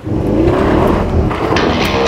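Porsche Panamera's V8 engine revving up under hard acceleration, its pitch rising. Electric guitar music comes in about one and a half seconds in.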